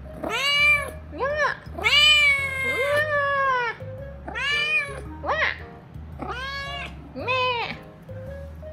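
Kitten meowing insistently for attention, about eight high, arching meows in a row, the longest about two seconds in, over background music.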